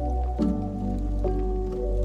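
Lofi hip hop music: mellow sustained chords over a deep bass, with the notes changing about half a second in and again a little past one second.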